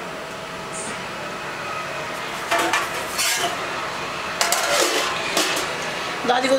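Kitchen utensils clattering against a pot or dishes: several sharp clinks and scrapes in the second half, over a steady hiss.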